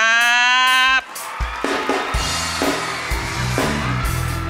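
A man's voice holds the word 'khrap' in one long note for about a second. Then band music with a drum kit, bass drum and bass starts and carries a steady beat.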